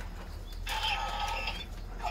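A Decadriver toy transformation belt plays an electronic sound effect through its small speaker for about a second, triggered by a rider card slotted into the buckle.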